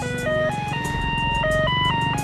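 An ice-cream seller's electronic jingle: a simple melody of clear, beeping notes stepping up and down. A small motorcycle engine runs steadily underneath.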